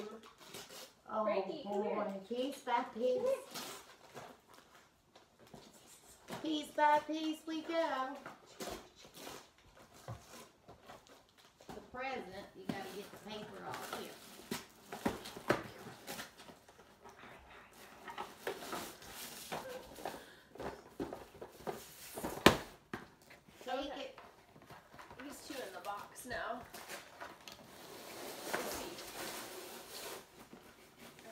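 A dog tearing at wrapping paper and nosing a gift box open, with paper crinkling and ripping in short bursts, and a sharp knock about two-thirds of the way through. Women's voices talk to it at intervals.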